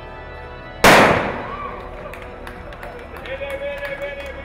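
A single loud shot from a starter pistol firing the race start, about a second in, with a short echo dying away after it.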